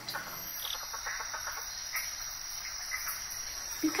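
A steady, high-pitched chorus of chirping insects, like crickets, as a natural ambience bed.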